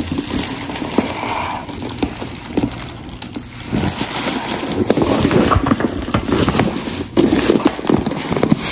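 Handling noise as a handbag is moved about on a plastic shopping bag: uneven rustling and crinkling with many small clicks.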